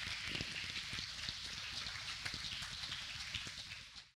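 Audience applauding, a steady patter of many hands clapping that fades out at the end.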